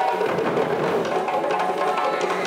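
West African drum ensemble playing live: several tall rope-laced drums struck with sticks in a fast, dense rhythm.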